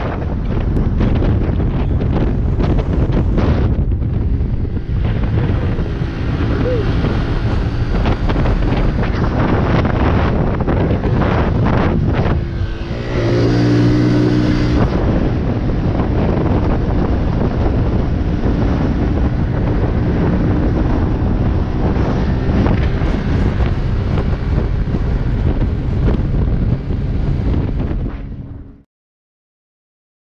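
A small motorbike being ridden on the road: steady engine and road noise, heavily buffeted by wind on the microphone. About halfway through, a pitched tone stands out more clearly for a couple of seconds.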